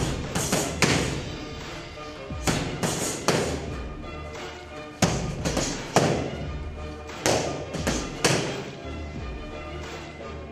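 Kicks and punches smacking into padded focus mitts: about a dozen sharp strikes in quick runs of two or three, over background music.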